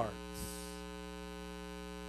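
Steady electrical mains hum, a low buzz with many even overtones, holding at one level.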